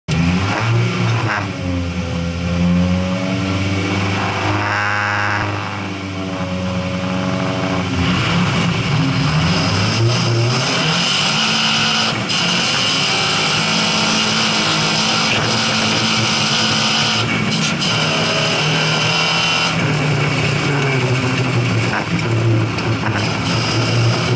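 Lada ice-racing car's engine revving at the start line, then launching at about eight seconds in and running hard down the ice track. A loud hiss of wind and snow spray sits over the engine once the car is moving.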